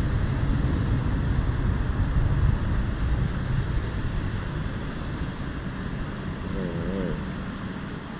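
Steady low rumble of wind and road noise from riding, with cars driving past close by. The noise eases off gradually through the second half.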